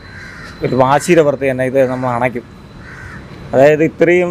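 A man's voice speaking in short phrases, with a bird calling in the background.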